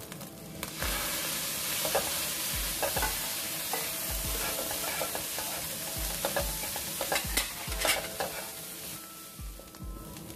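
Chopped dried shrimp sizzling in a hot oiled pan while a plastic spatula scrapes and turns it, with irregular scrapes and taps. The sizzle flares up suddenly about a second in as soy sauce hits the pan, easing off near the end.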